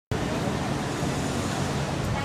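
Street ambience: a steady hum of road traffic with indistinct voices, cutting in suddenly right at the start.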